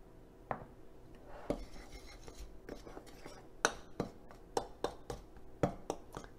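A metal spoon clicking and scraping against a ceramic bowl while dry flour and baking powder are measured and stirred. Sharp light taps come every half second to a second.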